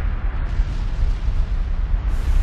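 Volcano-eruption rumble sound effect: a loud, continuous low rumble with a hiss over it.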